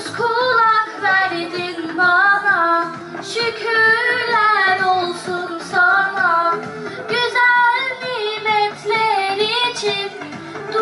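A girl singing a Turkish religious hymn (ilahi) into a microphone over a steady musical backing, in phrases of long, wavering held notes; the voice comes in right at the start over backing music that was already playing.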